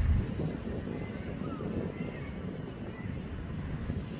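Steady low rumble of outdoor harbour noise, with a few faint, brief higher chirps.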